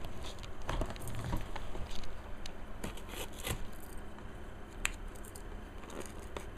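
Fingernails scratching and picking at the seal sticker on a cardboard CPU retail box, giving scattered small clicks and scrapes.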